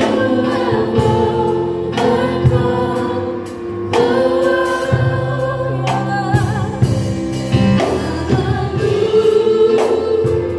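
A small church worship team of several singers singing a gospel song into handheld microphones, holding long notes together over sustained backing chords.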